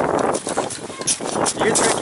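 Hand tools scraping and chipping at a block of packed snow, in irregular strokes a few times a second.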